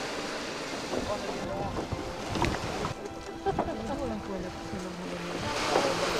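Waves washing on a sandy beach, with wind buffeting the microphone. Scattered voices are heard over it.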